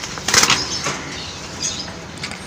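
A dove's wings flapping in one loud burst about half a second in as it is let go from the hand into a wire cage, followed by lighter rustling and small knocks.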